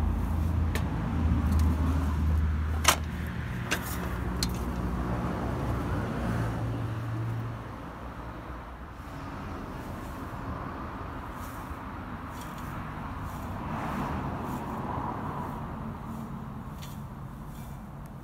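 A motor vehicle's engine running close by for about the first seven seconds, a steady low hum with a few sharp knocks over it. It then drops away, leaving a quieter, even outdoor background.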